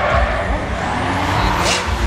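Drift car's engine running hard as the car slides sideways through a turn, with tyre noise and a high rising whine about a second in.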